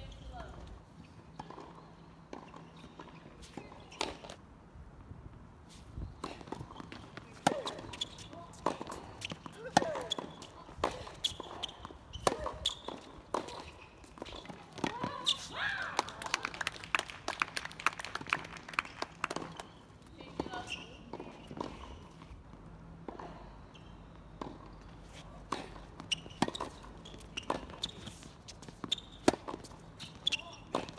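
Sharp, irregular knocks of a tennis ball bouncing on a hard court and being struck by rackets, with footsteps and distant voices, the voices busiest about halfway through.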